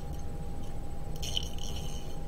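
Light metallic rattling and clinking, starting a little over a second in and lasting under a second, as metal rollerball pens and their packaging are handled, over a faint steady hum.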